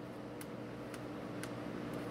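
A few light ticks, about four spaced roughly half a second apart, as fingers press black electrical tape onto a metal mint tin's hinge, over a steady room hum.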